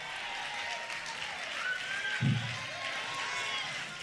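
Church congregation applauding and calling out in a pause of a sermon, with faint held notes underneath and a brief low call about halfway through.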